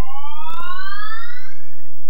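A rising, siren-like electronic tone: two pitches glide steadily upward together over about two and a half seconds, then cut off just before the end.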